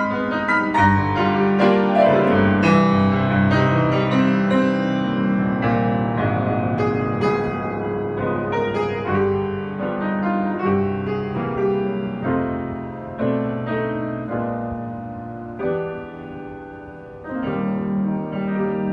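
A 1920s Bösendorfer Model 214 seven-foot semi-concert grand piano, freshly cleaned and tuned, played with both hands in a flowing passage of many notes. The playing grows softer in the last few seconds, then comes back louder just before the end.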